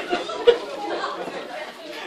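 Several people talking at once, indistinct chatter with no clear words, and a short sharp sound about half a second in.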